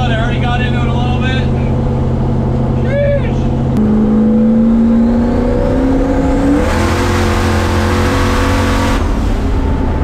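Race car engine heard from inside the cabin: a steady low note, then from about four seconds in the note steps up and climbs as the car pulls away. A faint high whine rises alongside it, and there is a loud rushing noise for about two seconds near the end.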